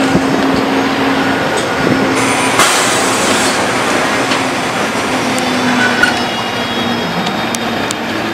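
Ikarus 280T articulated trolleybus standing at a stop with its electrical equipment running, giving a steady low hum over street noise.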